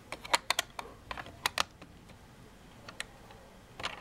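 Hard plastic LEGO pieces clicking and tapping as they are handled. There is a quick run of sharp clicks in the first second and a half, then a few single clicks.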